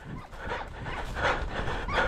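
Footsteps and rustling through dry grass and scrub, with a few faint short yelps from the hunting hounds.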